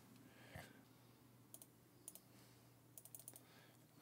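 Near silence with a few faint clicks of a computer mouse, including a quick cluster of clicks near the end.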